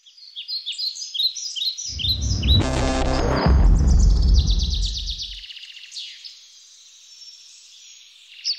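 Birdsong of quick chirps and trills, joined about two seconds in by a deep swelling rumble that is loudest around three to four seconds and dies away by about five and a half seconds, with the birds carrying on alone after it: a produced logo sting of birdsong and a low sound effect.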